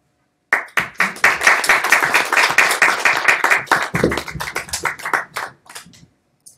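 Audience applauding: dense hand clapping that starts about half a second in and dies away near the end.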